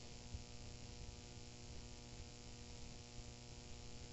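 Faint, steady electrical mains hum with hiss: room tone in a pause between words, with the hum coming from the sound system or recording chain.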